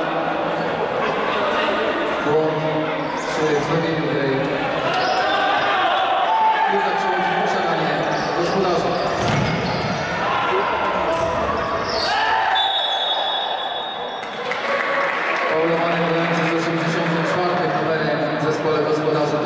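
Futsal ball being kicked and bouncing on a hard indoor court, with spectators' voices echoing in a large sports hall. About two-thirds of the way through, a steady high whistle sounds for a second or so.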